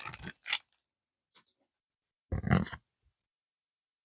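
Foil booster-pack wrapper crinkling briefly as the cards are slid out, then silence, broken about two and a half seconds in by one short, soft rustle or grunt.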